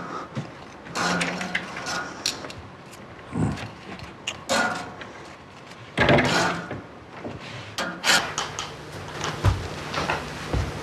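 Scattered knocks and clatters of household activity, with a few brief voice sounds in between.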